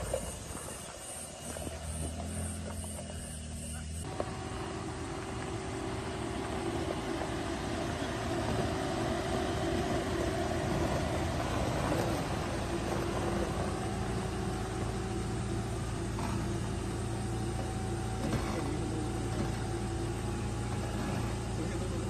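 Tank 300 SUV's engine running steadily under load as it crawls up a steep rutted dirt slope, with a constant hum; the sound changes abruptly about four seconds in and is fuller after that.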